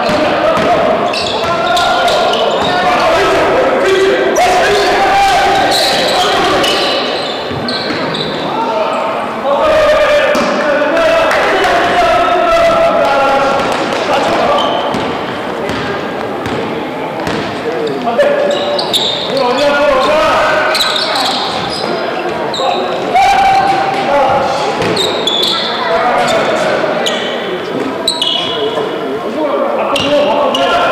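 A basketball dribbled on a hardwood gym floor during play, with players' voices and shouts carrying through the reverberant hall.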